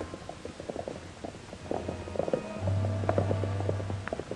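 Old-time film score bridging a scene change, with quick knocking beats running through it and a low held note coming in past halfway.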